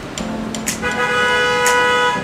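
A vehicle horn sounding one long steady blast, starting about a second in, with a fainter lower tone before it.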